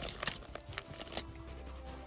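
Foil booster-pack wrapper crinkling as it is pulled open and the Yu-Gi-Oh cards are slid out, in a few quick crackles over the first second, then quieter handling.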